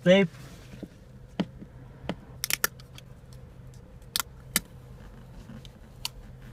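Scattered sharp clicks and crackles of a plastic-backed vignette sticker being handled inside a car: a few single ticks, a quick double crackle about two and a half seconds in, and two louder ones a little after four seconds.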